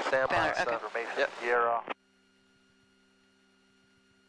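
A person speaking for about two seconds over a headset intercom feed, then near silence with a faint steady hum.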